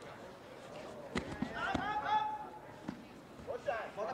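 Raised voices shouting from around a grappling mat, one high, strained call held for about a second near the middle, over a low hall murmur. A few sharp thumps come about a second in.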